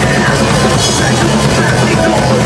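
Live thrash metal band playing, with electric guitars and a drum kit, loud and continuous.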